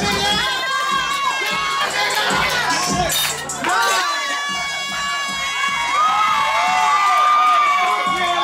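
A group of people screaming and cheering excitedly together, high overlapping whoops and shouts, over club music with a thumping bass beat.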